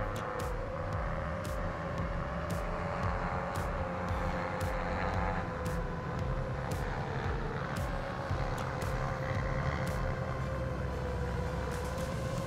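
Octocopter cinelifter in flight, its eight Axisflying AF310 motors spinning 7-inch tri-blade propellers in a steady hum whose pitch wavers slightly with throttle.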